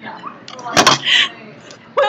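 A sharp thump about a second in, followed at once by a brief high-pitched squeal.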